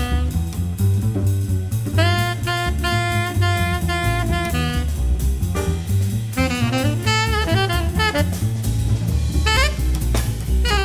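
Jazz played on saxophone over a drum kit. The saxophone holds long melody notes, then plays a quick run of notes in the second half.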